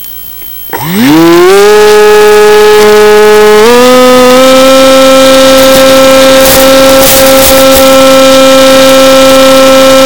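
Electric motor and propeller of a Mini Skywalker FPV plane, heard close from the on-board camera. It spins up with a sharply rising whine about a second in and levels off, steps higher near four seconds, then holds a steady high whine as the plane flies under power.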